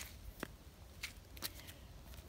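Quiet background with faint rustling and three short, soft clicks spread over two seconds.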